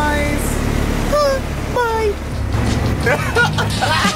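Background music with a singing voice: a held note, then two short falling vocal phrases, and busier singing from about three seconds in, over a steady low rumble.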